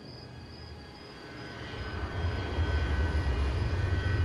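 Aircraft engines at an airport: a low rumble with a steady high whine, the rumble swelling louder from about halfway through.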